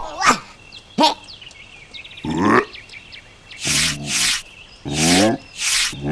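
A series of short, gruff, breathy cartoon character vocalizations, about six in a row, the loudest in the second half.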